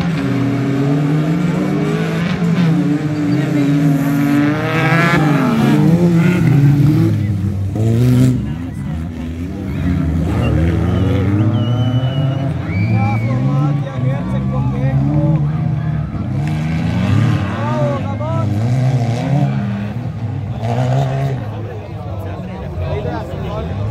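Several off-road racing buggy engines revving hard, their pitch repeatedly rising and falling as they accelerate and shift on a dirt track, several engines overlapping. They are loudest a few seconds in, with spectators' voices underneath.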